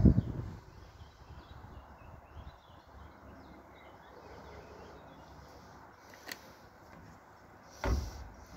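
Quiet outdoor ambience with a low rumble of wind on the microphone, strongest in the first half-second. A single short click comes about six seconds in, and a dull thump comes at the very end.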